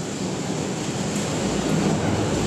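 Multi-layer conveyor-belt dryer on a puffed-snack line running: a steady mechanical drone of its drive, chains and fans, with a low hum that strengthens slightly in the second half.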